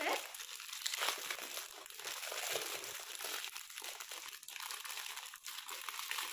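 Clear plastic wrapping crinkling and rustling as a packaged set of bangles is unwrapped by hand: a soft, irregular crackle.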